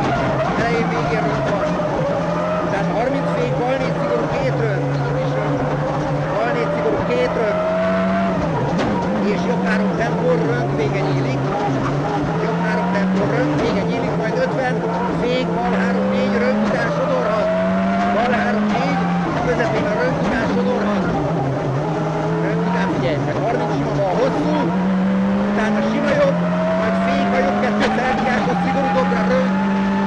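Ford Focus WRC rally car's turbocharged four-cylinder engine heard from inside the cockpit, revving hard under full acceleration. Its pitch climbs and drops back again and again as the driver shifts gears and lifts for corners.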